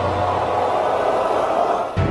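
Advert soundtrack: a dense, swelling drone that builds through the middle and cuts off abruptly just before the end, as a music cue begins.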